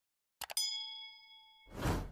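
Mouse-click sound effect, two or three quick clicks, followed at once by a notification-bell ding that rings and fades over about a second, then a swelling whoosh near the end.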